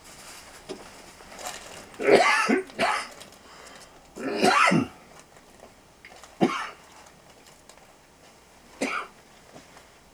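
A person coughing about five times in short separate bursts, the longest and loudest a little before halfway.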